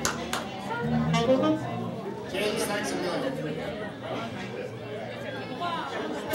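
Crowd chatter in a pub, with scattered instrument notes and a few sharp knocks from the band.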